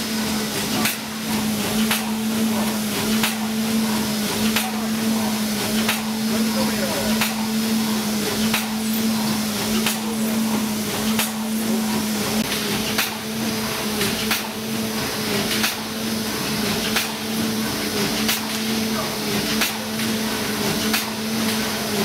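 Automatic horizontal doypack pouch packing machine running: a steady motor hum under a noisy mechanical din, with regular sharp clacks from its indexing and sealing stations about once or twice a second.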